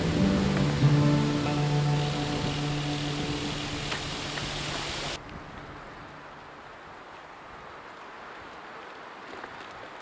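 Background music with sustained notes, fading gradually and then cut off abruptly about halfway through. After the cut there is a faint, steady hiss of outdoor ambience.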